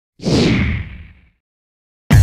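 A whoosh sound effect for a channel logo intro, with a low rumble under it. It starts a moment in, sinks in pitch and fades out within about a second.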